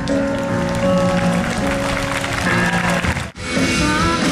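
Live band music with held keyboard chords and guitar. The sound drops out sharply for a split second about three seconds in.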